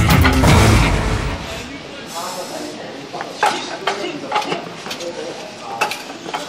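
Background music fading out over the first second and a half, then voices with a few sharp wooden knocks about a second apart: forearm strikes against the wooden arms of a kung fu wooden dummy.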